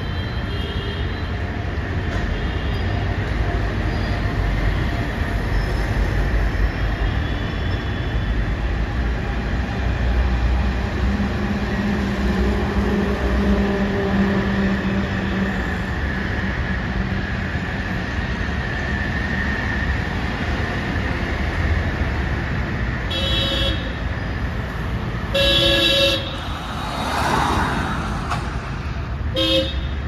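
Street traffic with a steady low engine rumble. Vehicle horns toot briefly three times in the last seven seconds, the middle toot the loudest.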